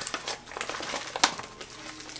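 Plastic protein-powder pouch crinkling as a hand digs a scoop into it and lifts it out. There is one sharper tick a little past halfway.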